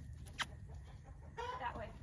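A single sharp click about half a second in, then a short animal call near the end.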